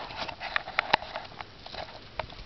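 Footsteps on a paved sidewalk: a quick, irregular run of hard taps.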